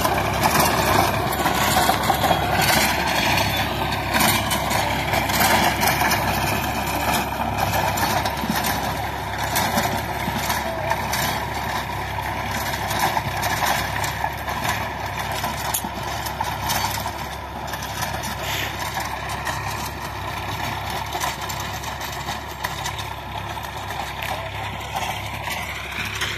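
A Massey Ferguson 7250 tractor's diesel engine runs steadily under load, driving a rotavator through the soil in third gear at about 1500–1600 rpm. It grows slowly fainter as the tractor moves away.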